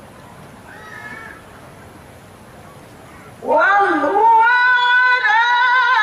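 Quiet hall ambience, then about three and a half seconds in a man reciting the Quran in the melodic tilawah style starts a long phrase through a microphone: a rising glide into a high held note that wavers in ornamented turns.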